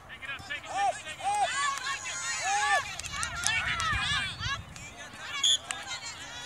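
Young players' voices shouting and calling across an outdoor soccer field, several overlapping in the middle, with a brief high-pitched chirp near the end.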